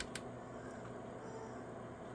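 One or two light clicks at the very start, from a control on the CB radio being switched down to low power, then faint steady background hiss.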